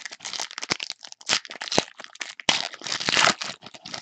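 Foil wrapper of a Panini Select basketball card pack crinkling and crackling in uneven bursts as hands tear and crumple it.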